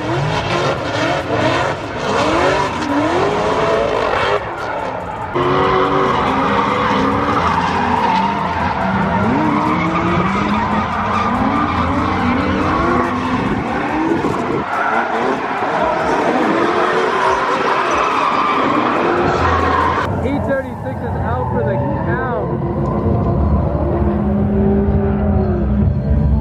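Drift cars sliding through the course: engines revving up and down hard, with the hiss and squeal of spinning, sliding tyres. About twenty seconds in the tyre noise drops away and the engine revs carry on over a lower background.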